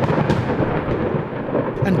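Thunder sound effect for a hurled thunderbolt: a loud, long rumble that slowly dies away.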